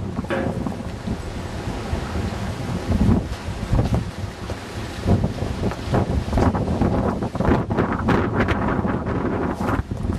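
Wind buffeting the microphone of a handheld camcorder: a loud, uneven low rumble that keeps surging and dropping.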